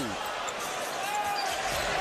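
Basketball being dribbled on a hardwood arena court, over a steady murmur of arena crowd noise.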